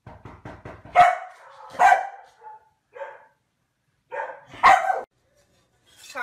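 A dog barking: loud single barks about one and two seconds in, a softer one near three seconds, then a louder burst of barks a little past four seconds.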